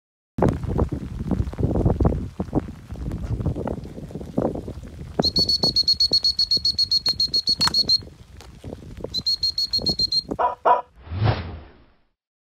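Wind buffeting the microphone, then two long blasts of a high, fast-trilling whistle, a recall signal to a dog, the first about three seconds long and the second about one second.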